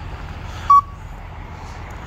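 A single short electronic beep about three-quarters of a second in, over a steady low rumble of an idling vehicle.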